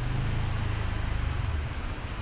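Low background rumble with a steady hiss over it, easing off a little near the end.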